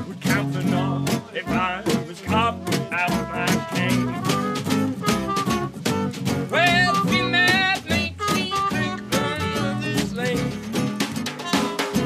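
Live swing band playing an instrumental passage: a snare drum keeps a brisk, even beat under double bass, electric and acoustic guitars, and a trumpet plays a wavering lead line in the middle.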